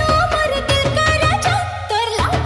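EDM DJ remix of a Sambalpuri folk song: a sung, wavering melody line over a fast, evenly repeating electronic beat, which thins out briefly near the end.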